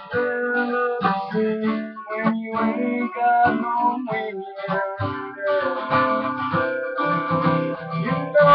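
Acoustic guitar strummed, each chord ringing on between the strokes.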